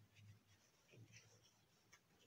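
Near silence with a few faint, soft rustles of hands handling a crocheted yarn doll and drawing a sewing needle and yarn through the stitches.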